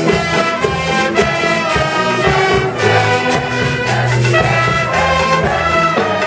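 Live brass band of trumpets and trombone playing a lively tune together with a steady beat.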